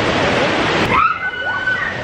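Surf surging and washing over rocks and around pier pilings, a dense rush of water that thins about halfway through. As it eases, a brief high-pitched held cry is heard.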